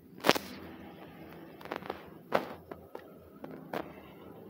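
A series of about eight sharp, irregularly spaced clicks and knocks, the loudest just after the start and another strong one a little past the middle.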